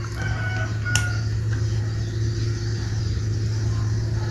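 A steady low hum, with a faint short high-pitched call in the first second and a single light click about a second in.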